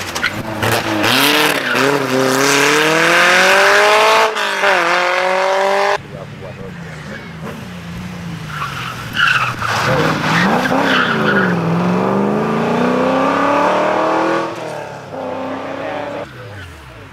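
Historic rally cars passing at racing speed, one after the other. The first engine climbs through the revs with a gear change about four seconds in and cuts off suddenly about two seconds later. The second engine drops in pitch as the car slows for the corner, then rises again as it accelerates away.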